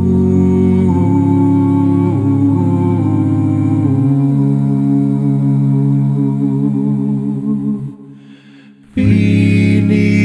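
An a cappella vocal group sings wordless held chords of a hymn arrangement, with inner voices moving under the sustained harmony. About eight seconds in the chord fades away, and a new full chord comes in about a second later.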